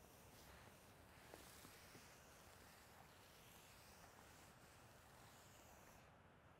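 Near silence: faint outdoor room tone with a few faint ticks.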